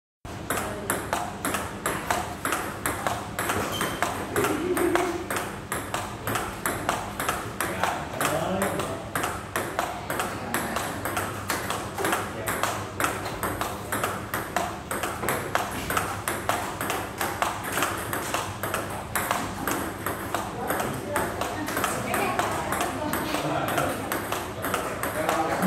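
Table tennis ball clicking off rubber paddles and the tabletop in a continuous forehand-to-forehand drill: a fast, even run of sharp hits with no break.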